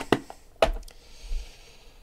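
Hands handling a small cardboard box of trading cards: two sharp taps, then a soft sliding rustle as the stack of cards comes out of the box.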